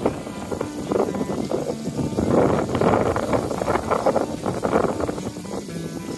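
Water running and splashing down a small rock waterfall, loudest in the middle, with music faintly underneath.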